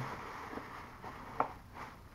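Quiet handling sounds of a plastic delivery bag and takeout containers being moved on a table, with a single short click a little past halfway.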